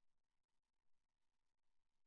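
Near silence: the broadcast feed is all but mute.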